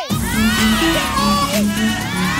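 A crowd of schoolchildren shouting and cheering together, with background music under them that plays a line of repeated low notes.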